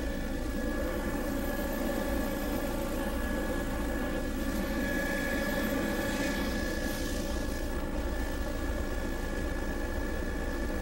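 Steady drone of a low-flying survey aircraft's engine, heard on board, with a thin steady whine over it.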